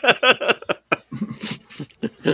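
People laughing, in quick repeated bursts that give way about halfway through to lower, breathier laughter.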